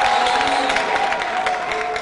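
Large audience applauding and cheering in an auditorium, dense clapping with shouts, beginning to die down near the end.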